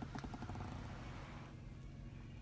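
Quiet car cabin: a low steady hum with faint rustling over the first second and a half, fading out.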